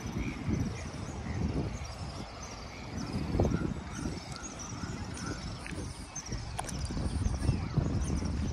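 Outdoor city-park ambience: an uneven low rumble of wind and distant traffic, with small high chirps repeating a few times a second.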